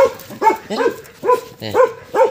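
A Bắc Hà dog barking five times in quick succession, evenly spaced at about two barks a second.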